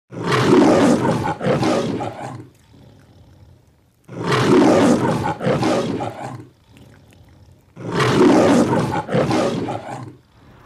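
The MGM logo's lion roar, heard three times. Each roar comes in two loud pulses, with quieter gaps between the roars.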